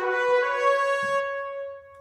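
Sampled trumpet section (Cinebrass Sonore trumpets a4, legato patch in Kontakt) playing a short rising legato line: it slurs up twice within the first half second and holds the top note, which dies away near the end.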